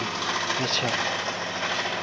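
An engine running steadily: an even, unbroken hum, with a brief voice about a second in.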